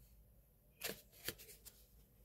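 Tarot cards being handled: three short, soft card sounds, the loudest about a second in.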